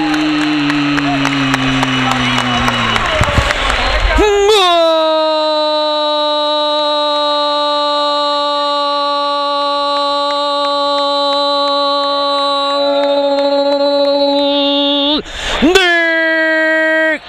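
A sports commentator's drawn-out "goooool" cry for a goal, one vowel held at a steady pitch for about ten seconds after a short breath, then broken off near the end.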